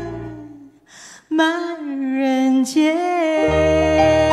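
A woman singing into a microphone with vibrato. The accompaniment fades out on a held note, and after a short gap she sings a phrase alone. The accompaniment comes back in about three and a half seconds in.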